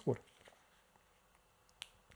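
A man's voice finishing a word, then a quiet pause broken by a single short, sharp click near the end.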